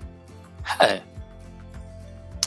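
A man's short hesitation sound, 'uh', falling in pitch, a little under a second in, over a steady, quiet background music bed.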